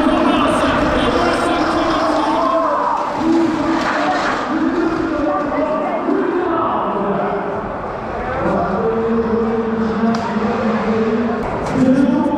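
An indistinct voice carrying through the indoor arena, likely over the public-address system, with no clear words and a steady background of hall noise.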